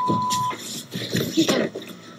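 Television censor bleep: a steady single-pitched beep lasting about half a second at the start, covering a swear word. Then quieter scattered rustling and knocks.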